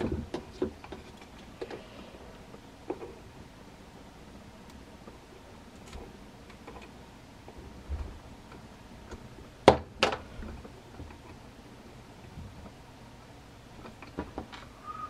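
Scattered small clicks and taps of wires being handled and twisted together inside a ceiling fan's wiring housing, with one sharper click nearly ten seconds in.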